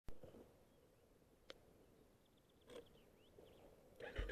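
Near silence: a sharp click right at the start, a fainter click about a second and a half in, a short rustle near the three-second mark, and a few faint high chirps toward the end.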